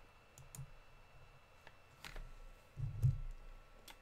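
Faint scattered clicks, with two low thumps about two and three seconds in.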